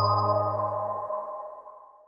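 Closing chord of a channel logo intro jingle ringing out: several sustained tones fading away, the low note stopping about halfway through.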